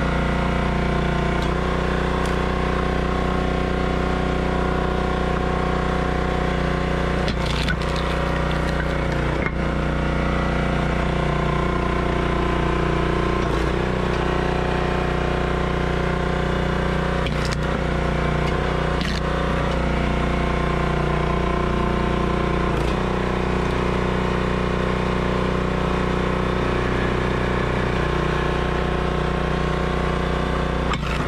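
Engine of a hydraulic firewood splitter running steadily, with about five sharp cracks and knocks as the wedge splits the wood.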